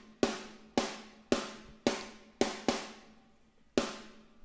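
Dry, unprocessed EZdrummer sampled snare drum playing alone: seven hits at roughly two a second, with a longer pause before the last, each ringing out and fading.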